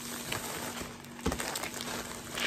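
Plastic poly mailer bag rustling softly as it is handled and turned over on a wooden table, with a soft thump a little past halfway.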